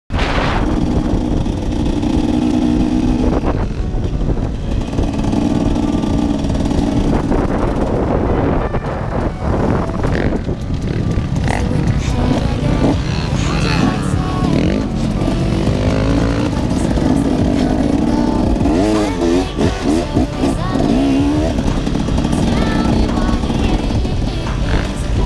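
Enduro dirt bike engine running under way, its pitch rising and falling as the throttle and gears change. Wind rushes over the microphone throughout.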